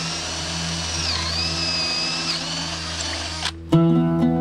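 Cordless drill running for about three and a half seconds with a high whine, its pitch dipping twice as the bit takes load, then stopping. Plucked-string music comes in near the end.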